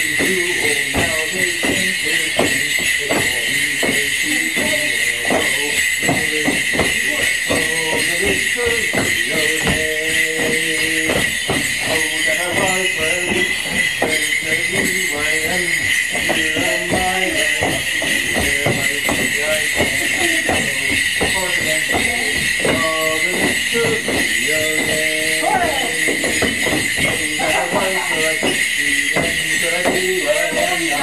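Folk dance tune played for a Morris dance, with the jingling of the dancers' leg bells and the knock of their steps on a wooden deck in quick, even strokes.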